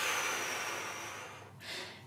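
A long breathy whoosh blown out through the lips, the 'wind' of a rain-and-wind breathing exercise, starting strong and fading away over about a second and a half. It is followed by a short quick breath in near the end.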